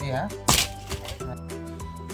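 A single sharp plastic snap from a Hot Wheels toy car track set about half a second in, over background music.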